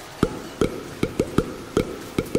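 Solo hand-drum strokes: about six sharp hits in an uneven rhythm, each with a quick drop in pitch, opening a devotional kirtan song.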